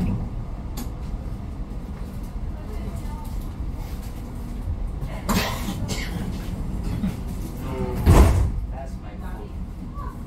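Inside a standing Bozankaya tram: a steady low hum with faint background voices. Two short louder rushes of noise come about five and eight seconds in, the second the louder.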